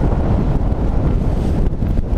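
Strong wind buffeting the microphone: a loud, uneven low rumble.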